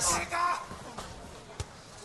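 Low arena crowd noise with one sharp thud about one and a half seconds in, a blow landing as two kickboxers grapple in the clinch. The commentator's last word trails off at the start.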